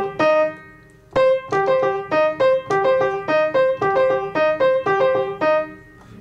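Piano played by one hand in an arpeggio exercise. A few notes sound, then there is a short pause. From just after a second in comes an even run of about four to five notes a second, rocking between a higher and a lower note, which stops shortly before the end.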